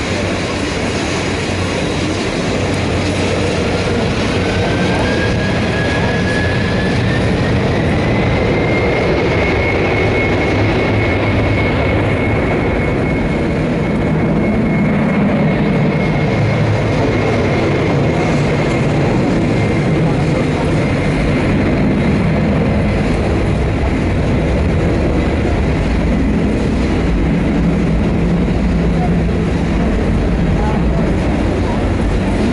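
Boeing 767-400ER's twin General Electric CF6 turbofans spooling up to takeoff power. A thin whine rises about four seconds in and levels off into a steady high tone over loud, rushing engine noise with a deep rumble, which carries on as the aircraft rolls down the runway.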